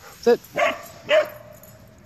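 A dog gives two short barks about half a second apart, then a thin, steady, high whine that carries on.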